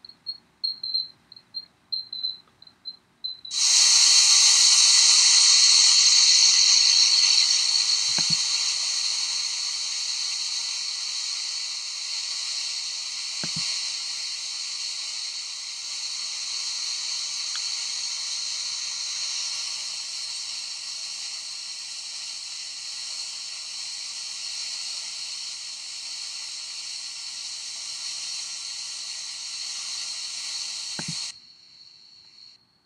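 Water cascading and splashing in a steady rush that starts suddenly about three and a half seconds in and slowly eases. Before it, a cricket chirps in rapid pulses. A couple of faint thuds are heard under the water.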